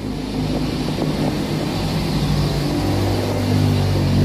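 A steady low motor drone with a rushing hiss over it, its pitch shifting slightly.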